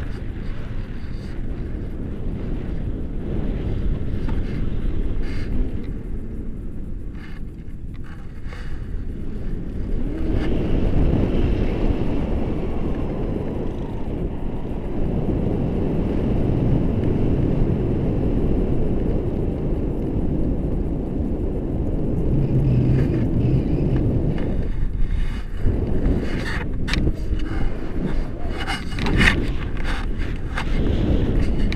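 Airflow of a paraglider in flight buffeting the action camera's microphone: a steady low rumble that grows louder about ten seconds in, with sharp crackles of gusting near the end.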